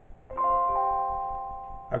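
A short chime-like musical chord: several steady tones come in together about a third of a second in, another joins a moment later, and the chord fades slowly over more than a second. It is the opening jingle of an animated web video.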